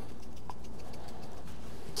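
Steady low room hum with one faint short tick about half a second in.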